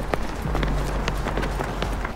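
Quick footsteps of people running, a rapid run of short sharp steps over a low steady hum.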